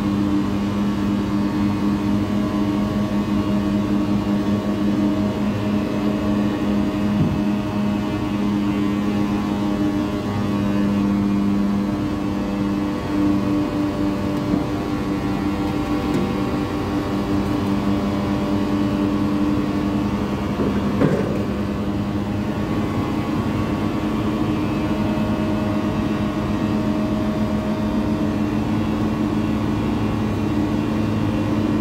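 A disc screen for wet raw material running, its rotating disc shafts and drive giving a steady machine hum with a couple of held tones, while a moving-floor feeder pushes wet sawdust onto the discs. A single short knock comes about two-thirds of the way in.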